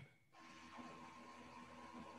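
Near silence: faint room tone with a low, steady hum. It comes in just after the audio briefly drops out at the start.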